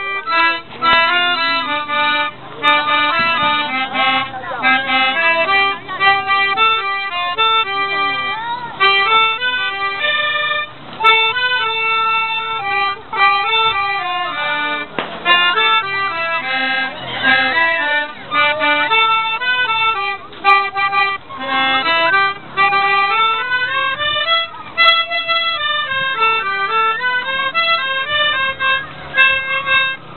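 Two melodicas and a plastic recorder playing a tune together, several reedy held notes stepping from one to the next.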